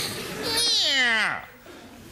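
A single long wailing cry that starts high and slides steadily down in pitch, dying away about one and a half seconds in.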